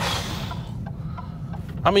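Maserati MC20 on the move, picked up by a microphone mounted outside the car: a steady low rumble of engine and tyres on a rough lane, with a rush of wind noise in the first half second.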